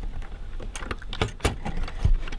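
Irregular small metal clicks and rattles from an open accordion's treble register-switch mechanism as its switch hooks are worked into place behind the levers by hand.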